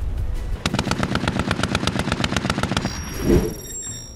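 A burst of rapid automatic gunfire, about ten shots a second for about two seconds, over background music. A single thump follows near the end, with a brief high ringing tone.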